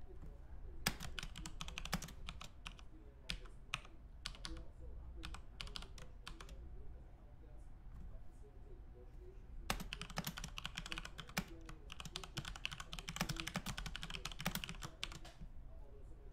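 Typing on a computer keyboard: two runs of rapid key clicks, the first from about a second in to about seven seconds, the second from about ten to fifteen seconds, over a low steady hum.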